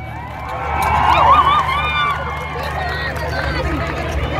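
Crowd of people talking and calling out, many voices overlapping, with a steady low hum underneath.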